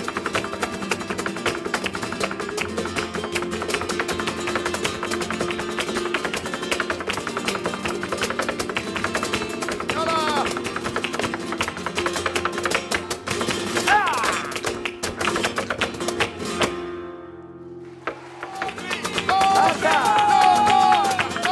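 Live flamenco alegrías: flamenco guitars under a dense, rapid rhythm of percussive strikes, with short sung cries about halfway through and again a few seconds later. Near the end the music briefly falls away, and a singer comes in with a long held note.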